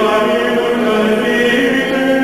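Sung chant: voices holding long notes, with the pitch stepping up once about halfway through, as background music.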